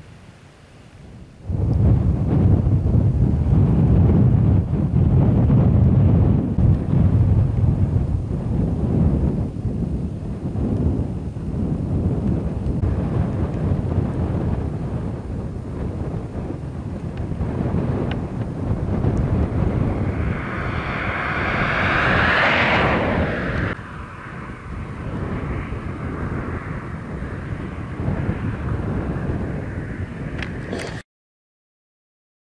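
Wind buffeting the microphone: a loud, uneven low rumble that starts suddenly about a second and a half in. Around twenty seconds in, a higher rushing noise swells for about three seconds and then cuts off abruptly.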